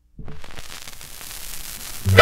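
Surface hiss and crackle of a shellac 78 rpm record as the stylus rides the lead-in groove before the music. It starts abruptly about a quarter second in as the disc comes up to speed, then runs steadily.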